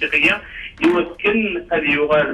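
Speech only: a person talking steadily.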